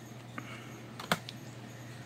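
Stiff card-stock game cards being handled, with one card laid down on a small stack: a few faint clicks and one sharper tap about a second in.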